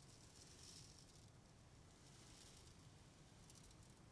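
Ocean drum tilted slowly, the beads inside rolling across the head in two faint swells that imitate waves washing in.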